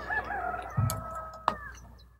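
A rooster crowing: one long call lasting nearly two seconds, with a short low thud partway through.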